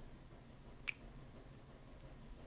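Faint room tone with a single short, sharp click a little under a second in.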